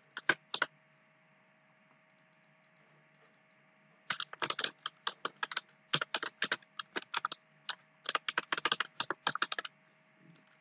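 Typing on a computer keyboard: a few keystrokes at the start, a pause of about three seconds, then a quick run of keystrokes through most of the rest.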